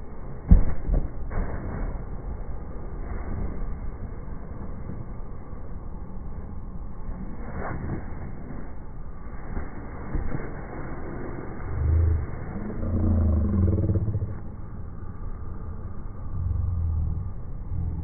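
A heavy thump about half a second in as a body lands on a padded stunt mat, over a steady low rumble. Later, a few louder low rumbles swell and fade.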